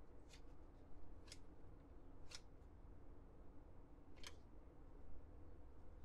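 Hockey trading cards being slid one at a time from the front of a stack to the back, each card giving a short, sharp swish: four swishes, the first three about a second apart and the last after a longer gap. A faint steady low hum lies underneath.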